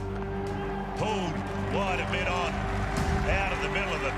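Background music with steady held low tones, with voices rising and falling in pitch over it.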